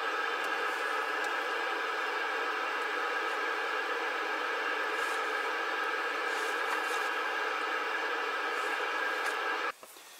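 Steady static hiss from a Cobra CB radio's speaker, the receiver set to receive with no station coming through. It cuts off abruptly near the end.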